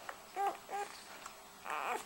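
Newborn puppies squeaking while they suckle: two short, high squeaks in quick succession, then a rougher, longer squeal near the end.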